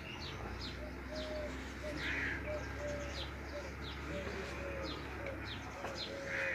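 Birds calling in the background: rapid, repeated high chirps mixed with short, soft cooing notes, and one harsher caw about two seconds in.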